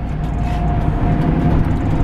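Truck's engine and road noise heard inside the cab while driving, growing steadily louder, with a faint steady whine for about a second in the middle.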